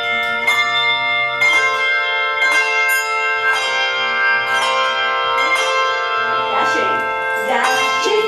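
A handbell choir playing a tune: hand-held bells struck about once a second, each note ringing on and overlapping the next, often several bells together as chords.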